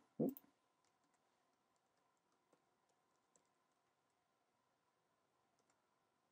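Near silence with a few faint, scattered clicks of computer keyboard keys.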